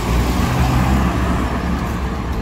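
Steady rumble of road traffic: car engines and tyre noise from a vehicle moving through a roundabout among other cars.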